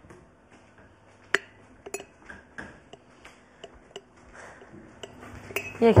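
Scattered light clinks and knocks of kitchen utensils and dishes being handled, the sharpest about a second and two seconds in.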